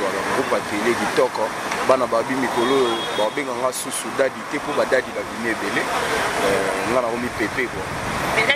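Speech only: a man talking steadily into a microphone.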